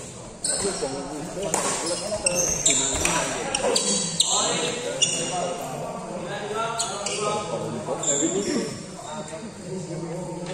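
A badminton doubles rally: irregular sharp smacks of rackets hitting the shuttlecock and short high squeaks of shoes on the court floor, echoing in a large hall, with people's voices underneath.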